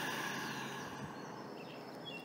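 A person's slow, audible exhale, loudest at the start and fading away over about a second and a half.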